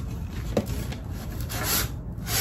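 A white packaging insert being pulled up out of a cardboard box, rubbing and scraping against the cardboard, with a small knock about half a second in and a louder scrape near the end.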